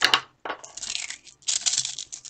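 Small neodymium magnetic balls clicking and clattering against each other as they are pulled apart and snapped back together by hand: a sharp snap at the start, a brief pause, then a run of rapid clicking from about half a second in.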